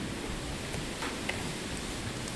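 Steady background hiss with a few faint ticks, the room tone under the narration.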